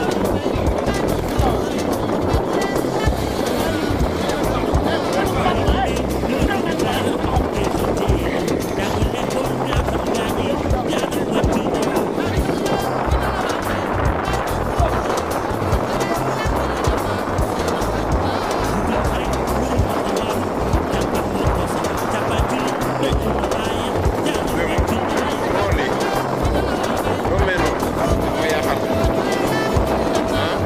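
Continuous loud rush of churning sea water and wind while a purse seine is hauled in by hand over a boat's side, with music and voices running throughout. A brief steady tone sounds near the end.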